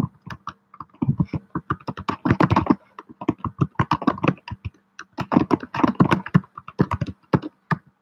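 Rapid typing on a computer keyboard, in several bursts of quick keystrokes with short pauses between them.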